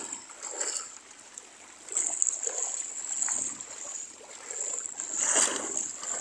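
Shallow seawater sloshing and splashing, swelling louder about two seconds in and again after five seconds.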